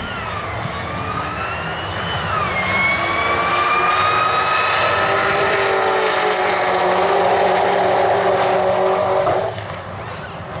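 Two Holden Commodore station wagons drag racing side by side at full throttle. The engines climb in pitch, drop at a gear change about two seconds in, then climb again and grow louder before cutting off abruptly near the end.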